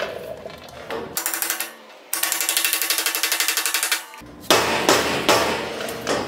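Soft-faced hammer tapping nylon torsion bushes into the tubes of a sprint car chassis. A quick, even run of taps comes in the middle, then a few separate blows near the end.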